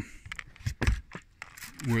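Scattered short clicks and a dull thump a little under a second in, from a plastic trigger spray bottle being handled.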